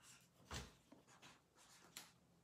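Felt-tip marker drawing short strokes on paper, faint and scratchy, with a soft knock about half a second in.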